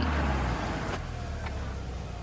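2019 Volkswagen Tiguan SUV driving along a road. A low engine and road rumble eases off about half a second in, leaving a steady hiss of road noise.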